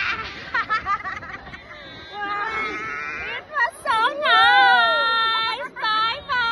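People screaming on an amusement-park thrill ride: short yells, then one long, high scream that bends up and down from about four seconds in, the loudest part. More screams start near the end.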